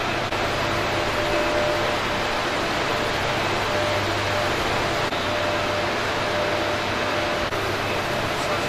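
Steady machinery noise in a hydroelectric power station's generator hall: an even rushing hum with a faint steady tone running through it.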